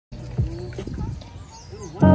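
Background voices of people nearby talking, with a few short knocks, the sharpest about half a second in.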